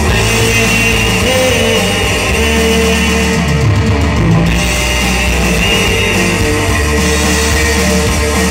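Live Bengali song played on electric guitar and keyboard through a PA system, loud and steady, with no clear vocal line.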